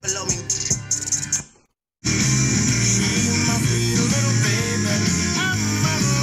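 FM radio stations playing through a Sony AV570X stereo receiver as its presets are stepped through. A short stretch of one station cuts to silence for a moment at the station change, and then another station's music plays steadily.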